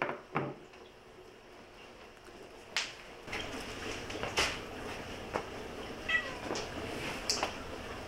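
A house cat meowing: one short call falling in pitch about six seconds in, among a few sharp light clicks.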